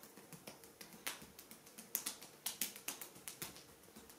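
Oiled hands kneading and pressing into bare skin on a back, making a quick, irregular run of sharp, wet clicks and smacks as palms and fingers grip and lift off the skin. The clicks are loudest from about halfway through.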